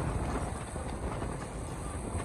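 Steady road and tyre noise of a car driving at speed, heard from inside the cabin.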